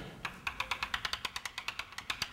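Rapid light taps of a writing tool dotting onto a board, about ten a second, marking many gas particles filling a space.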